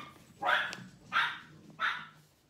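A dog barking three times, short separate barks.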